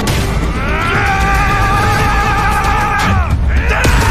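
Animated battle sound effects: a deep, continuous rumble of two energy attacks clashing, under a long, high, wavering cry that falls away about three seconds in. A second cry starts just before the end, as the clash bursts into light.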